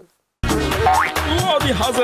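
A brief dead gap, then promo music starts abruptly with a short rising slide about a second in.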